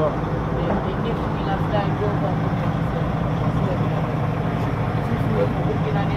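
Heavy truck's diesel engine running at a steady drone as the truck drives, with voices over it.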